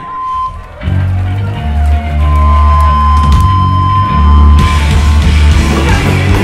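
Live hardcore punk band starting a song: an electric bass guitar plays heavy low notes from about a second in, over a steady high tone, and about four and a half seconds in the rest of the band comes crashing in.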